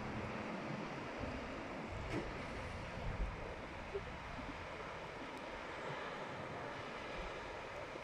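Steady rushing of wind on the microphone over distant surf breaking on the beach, with a low rumble and a few faint soft bumps.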